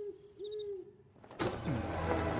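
An owl hooting twice, two short low hoots in the first second, as a night-time sound effect. About a second and a half in, music comes in loudly.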